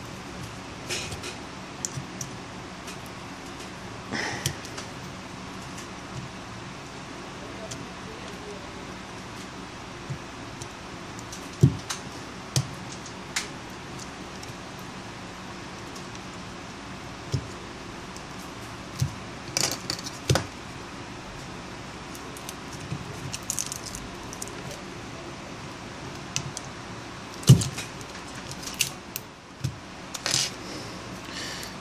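A thin metal prying tool clicking and scraping against a smartphone's frame and its strongly glued battery as the battery is worked loose, in scattered short taps with a few sharper knocks, over a steady background hiss.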